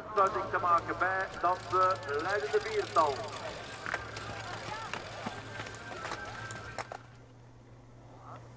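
Spectators' raised voices shouting for about three seconds, then a quieter steady background with a low hum.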